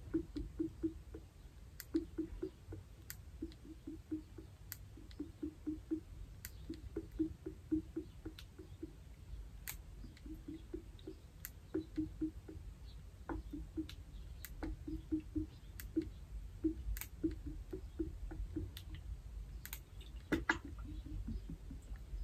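Lemon juice glugging out of an upside-down plastic bottle into a gallon water bottle: faint, irregular glugs in quick runs, with occasional small clicks.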